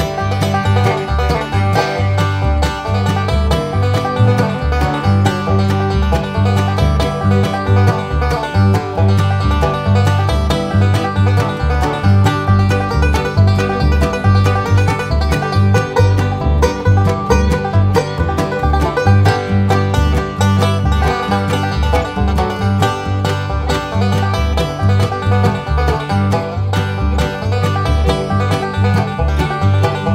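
Background bluegrass-style music led by banjo with guitar, playing steadily with a regular bass beat.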